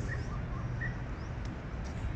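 Outdoor park ambience: a steady low background rumble with a few faint, short bird chirps.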